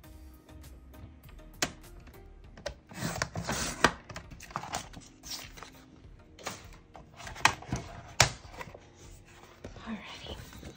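Cutting head of a Cricut sliding paper trimmer scraping along its rail and slicing through printed paper about three seconds in, then paper handling with a few sharp clicks and taps. Soft background music plays underneath.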